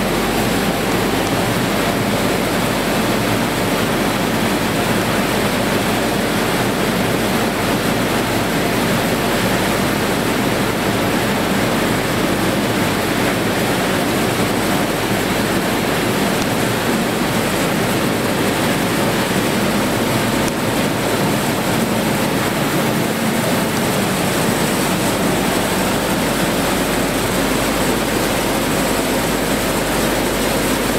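Grain dryer running under test after its broken drive chain was repaired: a loud, steady machinery noise that holds unchanged throughout.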